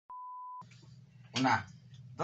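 Test-pattern tone: a single steady, pure beep lasting about half a second, the tone that goes with colour bars. A short burst of a man's voice follows about a second and a half in.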